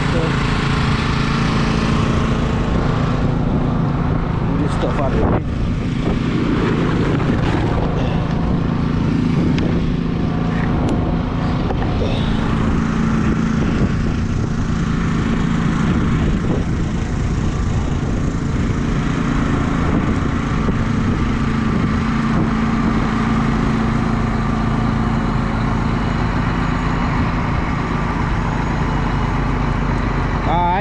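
An engine running steadily with an even low hum throughout.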